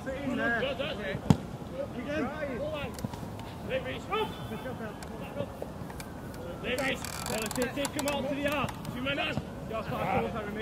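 Players' distant shouts on a football pitch, with one sharp thud of a football being kicked about a second in.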